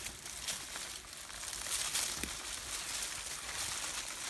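Rustling and crackling of fir boughs and dry twigs being pushed through at close range, with a few sharper crackles.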